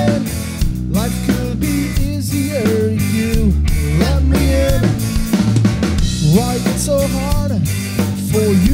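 Punk rock band playing live: a drum kit with bass drum and snare drives under electric guitars and bass, with a melodic line gliding up and down in pitch.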